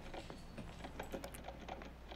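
Typing on a mobile phone: quiet, quick, irregular clicks, several a second, over a faint steady low hum.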